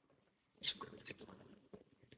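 Faint computer mouse clicks: two short clicks about a third of a second apart, followed by a few quieter ticks.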